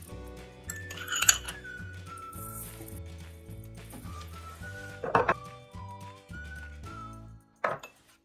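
Metal teaspoon clinking against a stainless steel mixing bowl three times: about a second in, midway, and near the end. Background music plays throughout.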